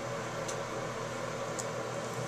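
Steady room hiss with a faint low hum, typical of a small room with a fan or air conditioner running, broken by two faint brief ticks about half a second and a second and a half in.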